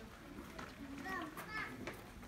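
Ambient voices of people nearby, with a child's high-pitched voice about a second in and a couple of sharp clicks.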